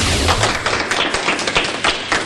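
A low thump at the start, as of a TV news graphic transition hit, followed by a dense, steady run of quick taps and clatter.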